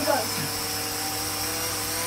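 Vectron Wave toy flying saucer's small electric motor and rotor running steadily, a hum with a high whine, as the toy lifts off to hover.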